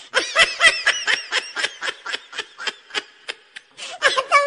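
High-pitched giggling laughter, a quick run of short pulses at about five a second.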